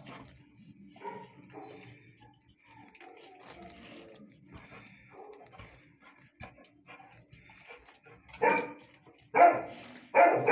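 Dogs barking and whining faintly in the background, then two louder, short barks about a second apart near the end.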